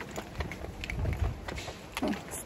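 Footsteps of a person walking at a steady pace, with some wind rumbling on the microphone around the middle.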